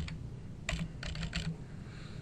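Computer keyboard typing: one key press at the start, then a quick run of about half a dozen keystrokes.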